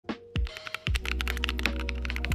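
Intro jingle of rapid computer-keyboard typing clicks over sustained music notes, with a few thumps and a low bass note that comes in just under a second in.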